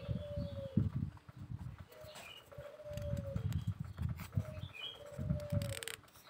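Doves cooing in repeated low phrases, with a few short chirps from small birds.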